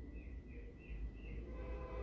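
Faint room tone: a low hum under a thin steady high tone, with a run of short faint chirps, about three a second, that fade out past the middle.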